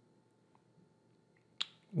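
Near silence with a few faint ticks, then a single sharp click near the end.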